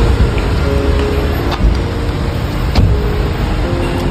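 Parking-garage ambience: a steady noisy rumble, with faint music-like tones underneath and a couple of sharp clicks.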